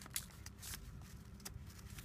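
Faint rustling of folded origami paper being handled as a pleated skirt is pulled out and fanned, with a few brief crinkles.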